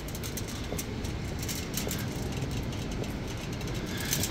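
Steady city street background noise, a low rumble of traffic, with faint crackles throughout.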